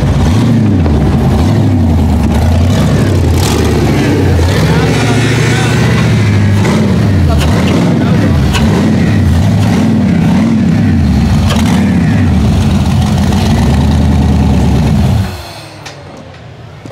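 Rock bouncer buggy's LS engine revving hard over and over while it climbs, its pitch rising and falling again and again as the throttle is worked. The engine sound stops abruptly about 15 seconds in.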